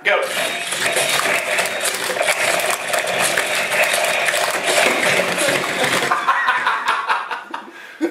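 Two toy fighting robots battling: their motors run and their plastic bodies and punching arms clatter together in a rapid flurry of knocks. The clatter cuts off suddenly about six seconds in, as one robot is knocked down.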